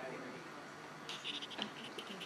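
Short, irregular scratchy rustling that starts about a second in, with one sharper click among it, over steady room noise.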